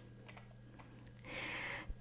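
Quiet room tone with a steady low hum and a few faint clicks, then a short breathy hiss in the last half second: a woman drawing breath before she speaks.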